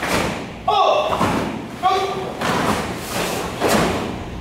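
A group of karate students moving through a kata together: several sharp thuds of bare feet stamping on foam mats and uniforms snapping, with two short shouted voices, the first about a second in.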